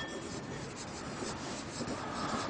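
Marker pen writing on a flipchart pad.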